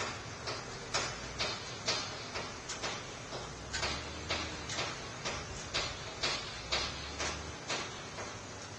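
A regular series of sharp clicks or knocks, about two a second, over a low hum and steady hiss; the knocking stops shortly before the end.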